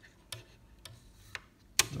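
Light clicks from the freshly greased plastic mechanism of an opened Commodore 1541-II floppy disk drive as it is worked by hand, about one every half second, with a sharper click near the end.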